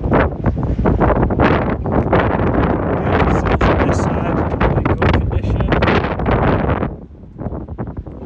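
Loud, gusty wind noise buffeting the microphone, dropping away sharply about seven seconds in.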